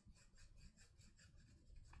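Faint, quick, even strokes of a coloured pencil on paper, barely above silence.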